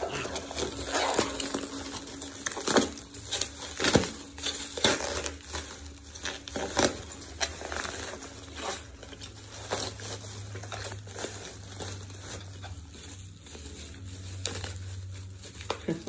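Plastic bubble wrap being handled and pulled apart, irregular crinkling and rustling with sharp crackles, busiest in the first half, over a faint low steady hum.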